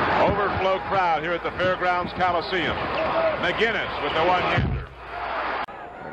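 Old television broadcast sound from a basketball game: a voice over arena crowd noise. It drops to a quieter stretch about five seconds in.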